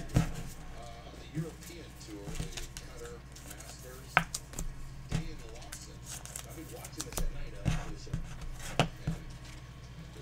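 Trading-card packs and cards being handled and opened on a table: scattered sharp clicks and snaps, several of them loud, over faint talking in the background.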